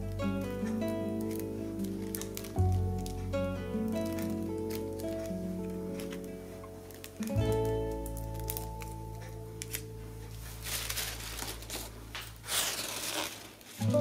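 Gentle relaxing guitar music, plucked chords left ringing and a new one struck every few seconds. From about two-thirds of the way in, tissue paper crinkles and rustles as a large sheet is unfolded and spread out.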